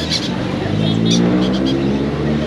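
A motor vehicle's engine revving up, its pitch rising steadily for about a second and a half. A few short high chirps sound over it.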